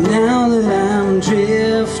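Live acoustic folk-rock: acoustic guitar accompanying a man singing long, wavering notes.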